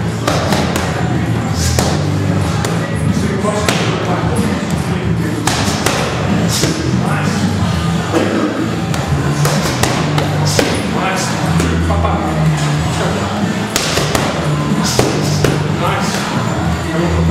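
Boxing gloves smacking into focus mitts as punches land in quick irregular combinations, a sharp hit about every second, over steady background music.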